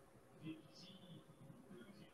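Near silence: faint room tone with a low, indistinct murmur like distant voices through the middle.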